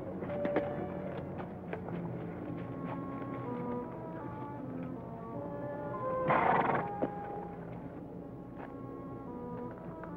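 Horses walking, their hooves clip-clopping, under background music. A short, loud rush of noise comes about six seconds in.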